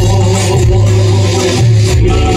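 Loud garba dance music played over a PA system, with a heavy steady bass line under it.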